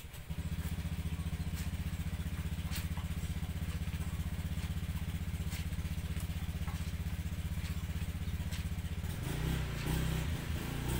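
A small motorcycle engine starts up and idles with a steady, fast low pulse, its note shifting near the end.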